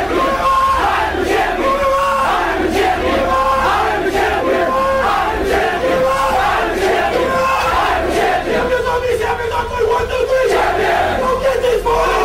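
A large crowd shouting and cheering, with a short pitched call repeating about once a second.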